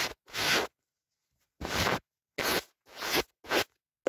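ASMR ear-cleaning sounds, close-miked: about five short, scratchy rubbing strokes, each under half a second, with dead-silent gaps between them.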